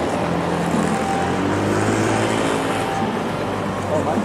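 City street traffic noise: a motor vehicle's engine hum close by, strongest around the middle, over the steady rumble of road traffic, with passers-by's voices mixed in.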